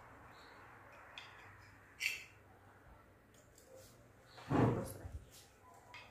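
Knife and fork cutting through a pan-fried cornmeal sandwich on a ceramic plate, with a light clink of cutlery on the plate about two seconds in and a louder dull thump a little past halfway.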